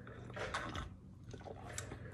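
A person taking a short sip of iced tea from a glass full of ice: a faint, brief slurp about half a second in.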